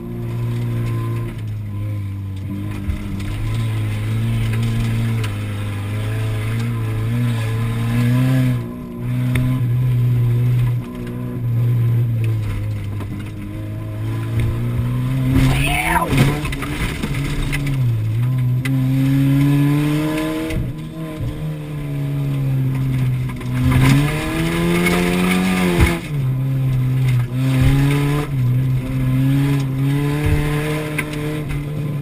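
Car engine heard from inside the cabin, revving up and easing off as the car is driven hard on a dirt track. There is a brief sharp rising squeal about halfway through and a noisy rush of tyre and gravel sound with the engine rising and falling near the end.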